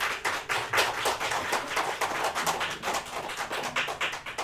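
Applause from a group of people, many quick overlapping claps.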